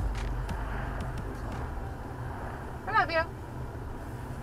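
Steady engine and road rumble heard inside the cabin of a moving car.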